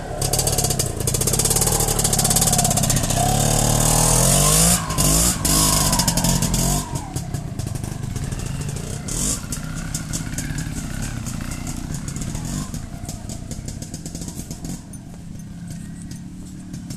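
Beta trials motorcycle engine revving hard as the bike climbs a steep dirt slope, its pitch rising and falling with the throttle. After about seven seconds it drops to a quieter, steadier running that slowly fades as the bike moves away.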